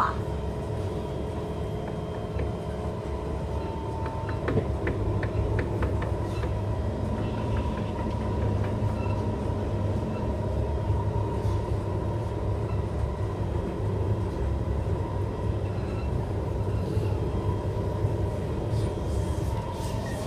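Inside a Singapore MRT train car running between stations: a steady low rumble of the wheels on the track under a constant hum, with a few light clicks about five seconds in.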